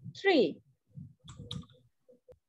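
A few quick computer mouse clicks about a second and a half in, after a single spoken word.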